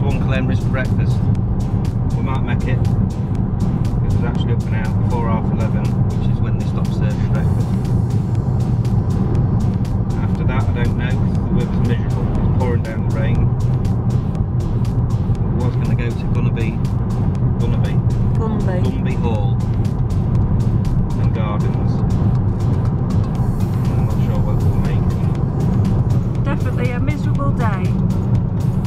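Steady car road noise heard from inside the cabin while driving, under background music with a voice in it.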